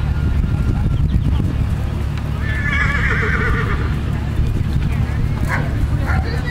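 A horse whinnying once, a wavering high call about a second and a half long that starts a couple of seconds in.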